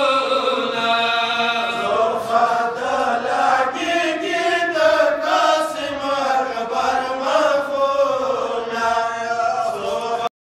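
A group of men chanting a noha, a Shia mourning lament, together into a microphone, their voices rising and falling in a slow melody.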